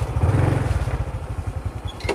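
Motorbike engine idling with an even low pulse, swelling briefly about half a second in.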